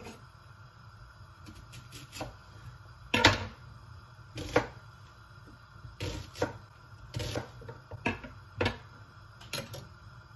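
Kitchen knife cutting half an onion on a wooden cutting board: a run of irregular knocks of the blade on the board, the loudest about three seconds in.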